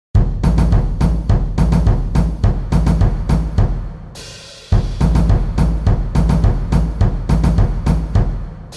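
Drums and cymbals playing the percussion intro of a mehter-style march: a steady, heavy beat in two phrases of about four seconds, each closing with a short fading ring before the beat starts again.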